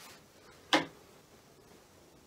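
A single short, sharp click about three-quarters of a second in, over faint room tone.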